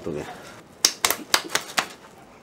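A quick run of about six sharp slaps to the face, in about a second, starting just under a second in.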